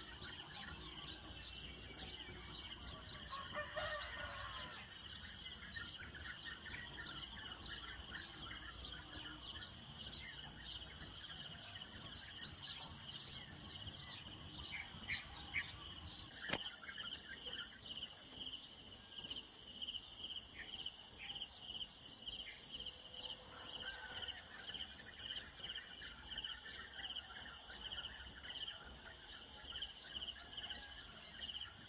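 Insects chirping in high, rapid pulse trains with short gaps, and occasional faint bird calls. About halfway through, the pattern switches abruptly to a steady run of evenly spaced, lower chirps.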